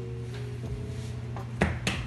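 Soft background music, then two quick knocks near the end as the ball of kneaded bread dough is set down on the work counter.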